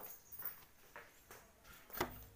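Faint footsteps on a concrete floor, about two steps a second, with a louder step near the end.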